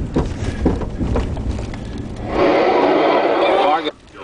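A vehicle driving along with a low rumble, then, a little past halfway, a loud burst from the car radio's baseball broadcast that cuts off suddenly just before the announcer speaks.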